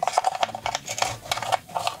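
Quick, irregular clicks and rattles of a wooden puzzle box being handled, a wooden key on a cord poked into the slots in its face.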